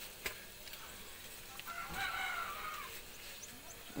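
A rooster crowing faintly, one call of a bit over a second starting near the middle, with a few faint clicks before it.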